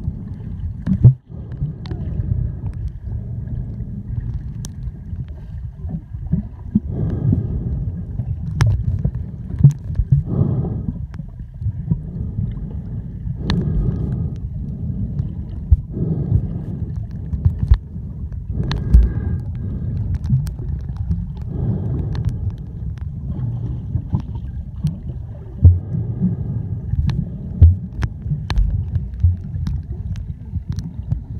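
Underwater sound picked up by a submerged camera: low rumbling water noise with scattered sharp clicks and pops.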